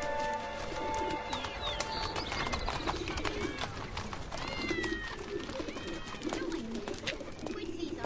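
Pigeons cooing repeatedly, about once a second, over a busy background of clicks and knocks. A few higher gliding calls come in the middle. Held music tones fade out in the first two seconds.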